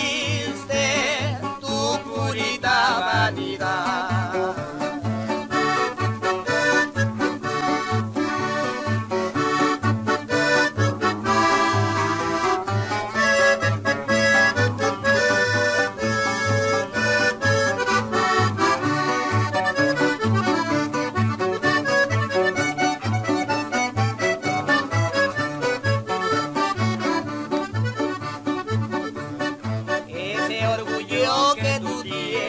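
Norteño music, an instrumental passage: a button accordion plays the melody over a steady, evenly pulsing bass beat, with no singing.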